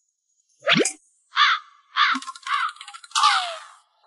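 Short cartoon-style comic sound effects: a quick swoop about a second in, then four brief chirping bursts, the last ending in a falling tone.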